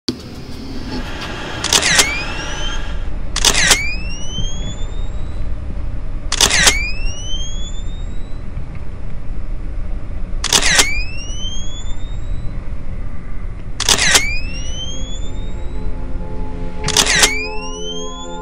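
Six camera shutter clicks at uneven gaps of about 1.5 to 4 seconds. Each is followed by a short rising whine, like a flash recharging. A steady low rumble runs underneath.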